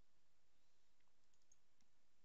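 Near silence with a few faint mouse clicks about one to two seconds in.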